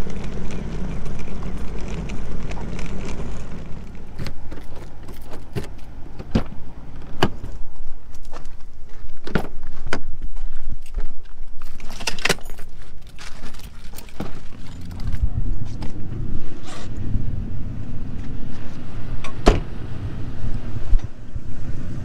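Keys jangling with many scattered sharp clicks and knocks of handling around a car, over a low vehicle rumble that is there at the start and again in the second half.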